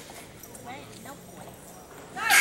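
Faint voices in a large gymnasium during a basketball free throw.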